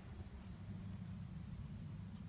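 Faint outdoor ambience: a steady low rumble under a high, evenly pulsing chirr of insects.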